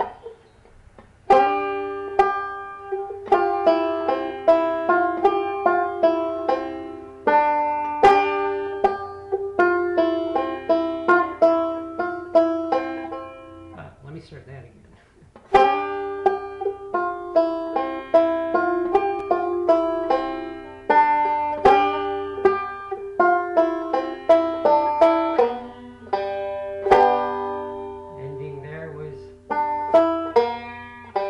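A cough, then a five-string banjo picked three-finger style in a continuous forward-backward roll of bright plucked notes, starting about a second in. The playing breaks off briefly around the middle and then picks up again.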